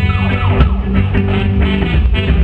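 Live reggae band playing an instrumental passage between vocal lines: heavy bass, drums and electric guitar. Just after the start, a siren-like pitched sweep falls over about half a second.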